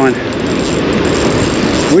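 A spinning reel being cranked by hand, with a faint mechanical ratcheting, over steady surf noise.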